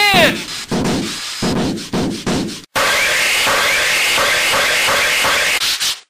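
A run of sharp knocks like a hammer driving a nail, then, after a sudden cut, sandpaper rubbed back and forth by hand on a wooden board in quick, even strokes.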